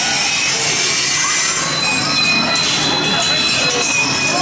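Loud, steady, rasping sawing noise filling the maze. About halfway in, a thin, high, steady whine joins it.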